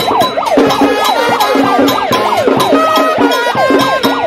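Street brass band playing with drums, over a fast up-and-down warbling siren-like tone, about three sweeps a second.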